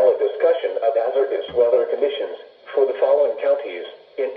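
Weather alert radio's speaker playing the NOAA Weather Radio broadcast voice reading the forecast, with a thin, small-speaker sound.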